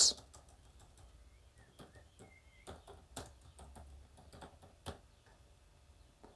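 Computer keyboard keys clicking as a short name is typed: quiet, irregular keystrokes, starting about two seconds in and stopping about five seconds in.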